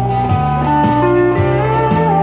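Pedal steel guitar playing a held, sliding melody over a strummed acoustic guitar and a bass line that steps about twice a second, in a live country instrumental.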